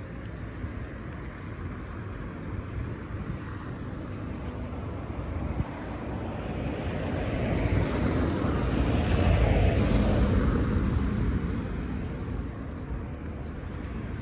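Road traffic: a motor vehicle drives past close by on the road, growing louder to its loudest about nine to ten seconds in and then fading away. A low wind rumble on the microphone runs underneath.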